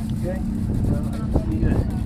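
A vehicle engine running steadily at one unchanging pitch, with talk over it.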